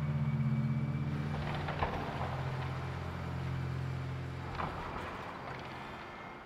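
John Deere excavator's diesel engine running steadily with a low hum, with a couple of short knocks of debris being moved.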